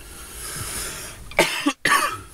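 A man coughing into his hand, two or three sharp coughs in the second half, after about a second of breathy hiss.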